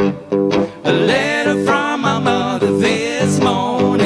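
Acoustic blues band playing live, guitar to the fore, in an instrumental stretch between sung lines.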